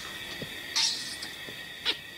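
Steady high trilling of night insects, with two short, high squeals cutting through: one about a second in and a sharper one near the end.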